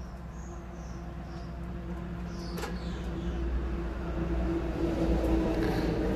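Power drill motor running steadily with a held whine that grows gradually louder.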